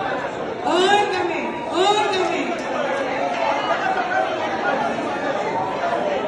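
Several people talking over one another in a large, echoing hall, with a louder voice cutting in about a second in and again about two seconds in.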